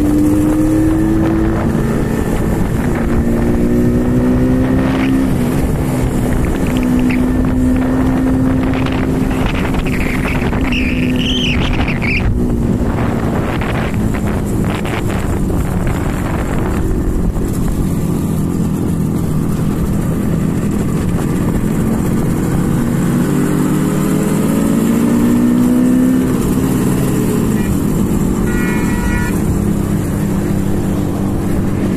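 Yamaha Rajdoot RD 350's air-cooled two-stroke twin riding alongside, its engine note rising and falling with throttle and gear changes and climbing steadily about two-thirds of the way through, over wind rush. A short warbling high tone comes about a third of the way in, and a brief high tone near the end.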